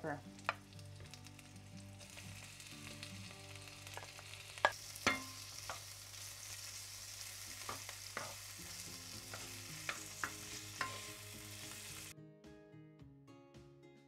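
Sliced onion, garlic and bell peppers sizzling as they fry in oil in a nonstick skillet, with a wooden spoon stirring them and knocking against the pan several times. The sizzle starts about two seconds in and cuts off sharply near the end.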